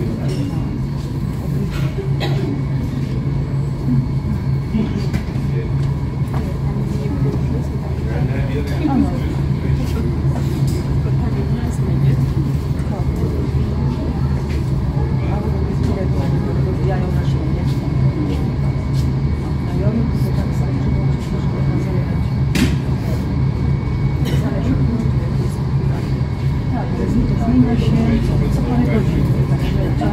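Steady low engine hum, with indistinct voices of people talking over it.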